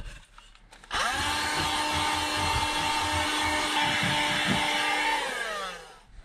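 A small electric motor in a handheld device spins up quickly about a second in, runs at a steady whine for about four seconds, then is switched off and winds down with falling pitch.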